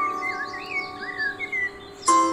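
Background music with mallet or chime notes dying away, and several short, wavy bird-like chirps over them.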